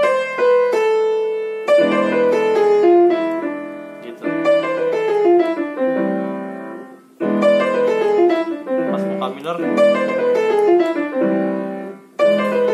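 Yamaha piano played with both hands in quick jazz-gospel licks over a dominant chord. It plays several short runs, each stepping downward in pitch, with a brief break about seven seconds in.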